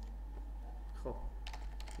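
A few keystrokes on a computer keyboard, clustered in the second half, over a steady low hum.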